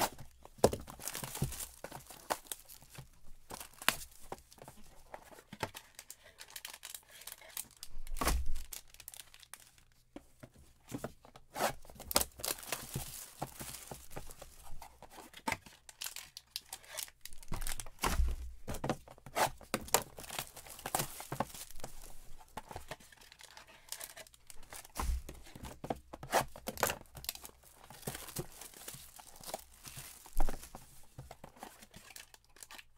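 Cardboard trading-card hobby boxes being torn open and wrapped card packs pulled out and handled: a steady run of tearing, crinkling and rustling with sharp clicks. There are three dull thumps as boxes are set down.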